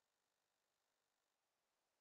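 Near silence: no audible sound, only a faint hiss at the floor of the recording.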